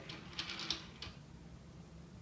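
A few faint, light clicks and taps in the first second, then quieter, from hands turning the screw knobs of a portable stringing machine's headpiece to clamp a tennis racket frame.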